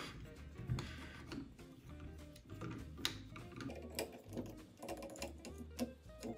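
Soft background music with a few light clicks of a screwdriver and small metal parts as a screw is undone on an opened-up sewing machine.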